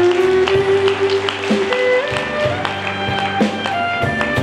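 Live country band playing an instrumental passage with no vocal: a held lead line that slides up between notes, over guitars and a steady drum beat.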